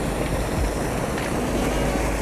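Steady rush of water pouring from a spillway outlet pipe into a churning pool.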